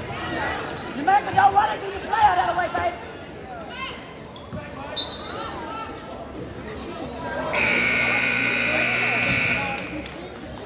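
Gymnasium scoreboard buzzer sounding one steady, loud electric tone for about two seconds, starting a little past halfway and cutting off suddenly, marking the end of the quarter. In the first few seconds, spectators shout and a basketball bounces.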